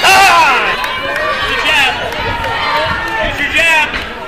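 Men shouting during a boxing bout, loud yelled calls from ringside. The loudest bursts come right at the start, again just under two seconds in and near the end.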